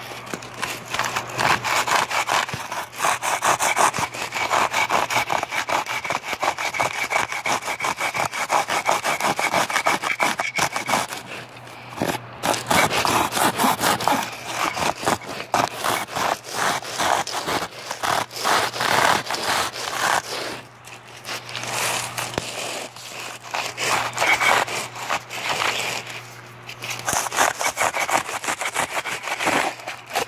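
Rough grinding surface of a homemade hand tool scraped rapidly back and forth against a surface, a dense run of scraping strokes broken by a few short pauses. A low steady hum lies underneath.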